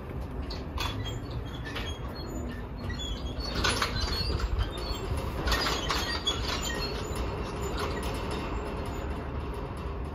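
Wind buffeting the microphone in a fluctuating low rumble, with a few short knocks or rustles, strongest about four and six seconds in.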